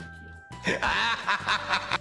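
Background music, joined about half a second in by a person laughing in quick repeated bursts, the loudest sound here.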